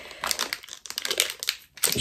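Plastic packet crinkling as it is handled, a run of irregular crackles that break off briefly just before the end.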